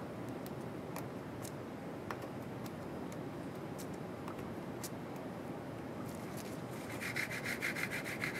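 Light clicks and scrapes as a pointed plastic tool pierces the foil seal over the wells of a test plate. About seven seconds in comes a rapid, even rubbing, many strokes a second, as the plate is shaken back and forth on the bench to mix its reagents.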